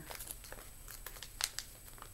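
Plastic bag crinkling and crackling as it is handled, with a sharper crackle about one and a half seconds in.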